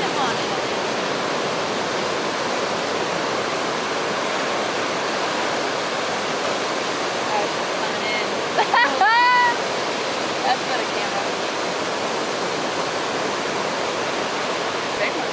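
Steady rush of ocean surf breaking close by. About nine seconds in, a person lets out a loud shout lasting about a second, its pitch bending up and down.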